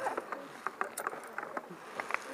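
A few scattered short clicks and knocks over a faint background hiss.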